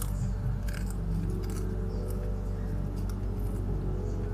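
Crunching and chewing thin round crisps close to a small handheld microphone: half a dozen sharp crunches scattered through, over a steady low hum.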